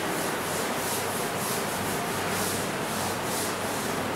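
Chalkboard duster wiping chalk writing off a blackboard: steady back-and-forth rubbing strokes, about three a second.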